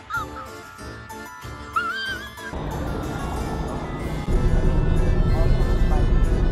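A wavering, high-pitched vocal sound twice in the first half, then music, with steady car road noise at highway speed coming in louder about four seconds in.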